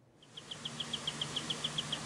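Forest ambience: an insect calling in a steady, rapid train of high chirps, about ten a second, over a background hiss, with a faint low hum underneath. It fades in just after the start.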